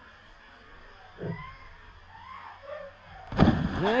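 A child jumping into a shallow river: after a quiet stretch with faint voices, a loud splash breaks in about three seconds in, followed by an excited voice.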